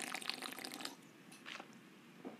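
Faint sounds of a drink being gulped from an aluminium can, liquid and swallowing, for about the first second.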